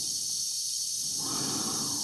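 Steady hiss of a spacesuit's air supply with an astronaut's slow breathing inside the helmet; one breath swells in over the second half.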